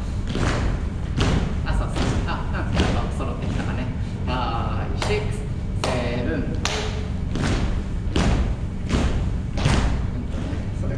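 Rhythmic thumps at a steady beat, about two a second, from dance steps or beat-keeping in a rhythm-training drill, with a voice heard briefly over them near the middle.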